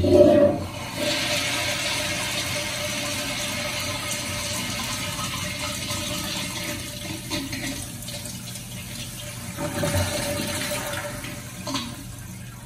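Kohler Wellcomme toilet flushed by a manual flushometer valve. There is a loud burst as the valve opens, then a steady rush of water into the bowl with a faint steady tone running under it. A second surge comes about ten seconds in, and then it tails off.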